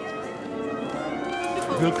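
Orchestral music with many held string tones sounding together, growing a little louder. A man's voice begins speaking near the end.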